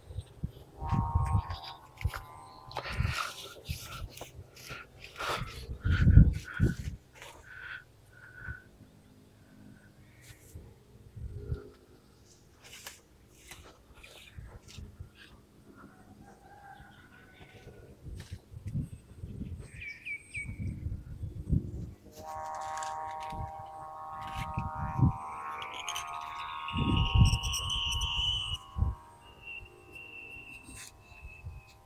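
Wind gusting on the microphone in uneven low buffets, with scattered bird chirps. In the last eight seconds a steady pitched drone with several overtones joins in.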